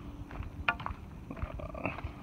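Footsteps on a dirt and leaf-litter forest trail while walking, with irregular short knocks and rustles and a faint steady hum in the first half.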